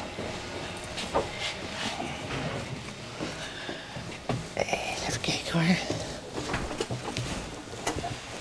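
Faint, indistinct voices murmuring in a small room, with a few sharp clicks and knocks scattered through.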